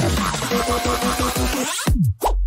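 Electronic bass music playing from DJ decks: a dense beat with quick falling-pitch kicks, and a rising sweep near the end as the low end drops away ahead of a drop.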